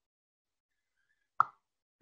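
Silence, broken once, about one and a half seconds in, by a single short pop.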